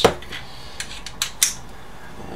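Metal hand tools clinking as they are picked up and handled on a workbench: a few short, separate clicks and clinks.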